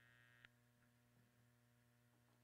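Near silence with a faint steady electrical mains hum from the sound system, and a faint click about half a second in.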